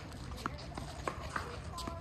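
Four sharp knocks of tennis play on a hard court, spaced roughly half a second apart. A short squeak comes near the end, and faint voices sit in the background.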